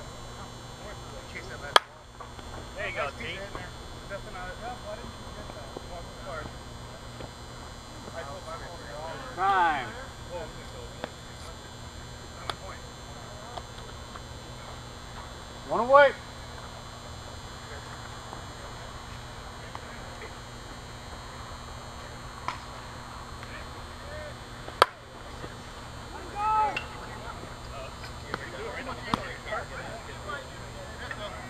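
Slowpitch softball bat striking the ball with a sharp crack about two seconds in, the loudest sound here, followed by players shouting on the field. A second, fainter sharp click comes later.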